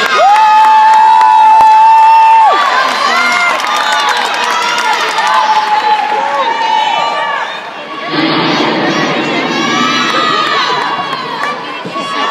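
A group of young women shouting and cheering for a gymnast, with one long held shout at the start and many overlapping yells after it.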